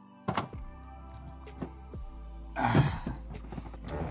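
Background music over the thumps and knocks of a person climbing into the cargo area of a Dodge Magnum estate car: one sharp knock about a third of a second in, and a louder, noisier bump near three seconds.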